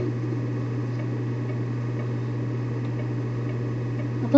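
A steady low hum over faint background noise, unchanging throughout.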